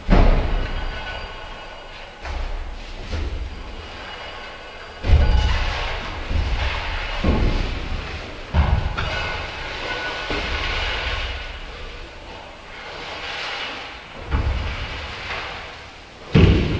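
Dark sound-design soundtrack: a series of heavy booms, five in all with the loudest about five seconds in, each dying away into a rumbling, rattling noise.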